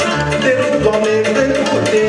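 Live band music with a steady, rhythmic bass line and sustained melody instruments, and a man singing into a handheld microphone.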